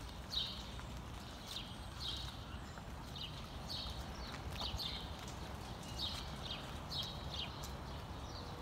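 A bird chirping repeatedly, short high calls coming irregularly about once or twice a second, over a steady low background rumble.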